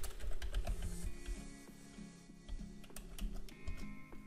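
Typing on a computer keyboard: a quick run of keystrokes, thinning out later, with soft background music underneath.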